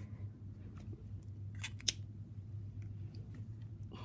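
A pen being handled: two sharp clicks a fraction of a second apart, a little under halfway through, over a steady low hum.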